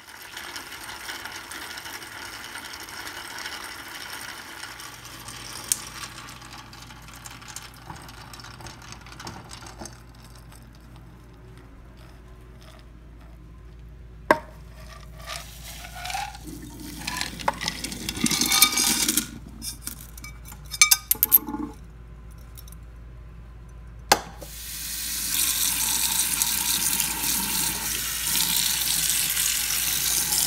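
Hot water and shungite stones poured from a metal pot into a stainless mesh strainer in a sink: a splashing pour, then a few sharp clatters of the stones hitting the strainer. About five seconds before the end a tap comes on and runs steadily onto the stones. A steady hiss fills the first part, before the pour.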